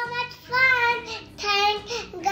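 A young girl singing in a high voice, three or four drawn-out, wavering notes, over faint background music.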